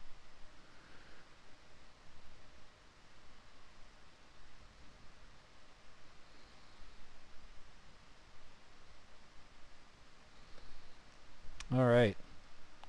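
Faint computer mouse clicks over low room hiss, with a brief vocal sound just before the end.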